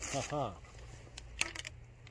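A few light clicks about a second and a half in, from handling a Remington 870 pump-action shotgun while trying to load a homemade shell that is too big to fit.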